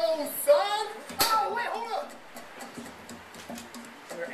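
Speech from a video played back over loudspeakers, with faint music under it; the voices are loudest in the first two seconds and then drop away.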